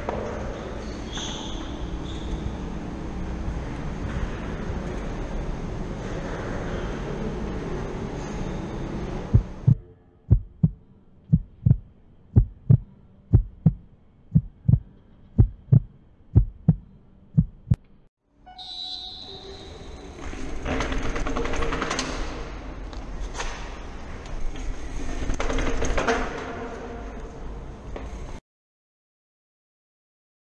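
A heartbeat sound effect, a steady run of heavy thuds about twice a second, lasting about eight seconds in the middle with the other sound cut away. Steady background noise comes before and after it.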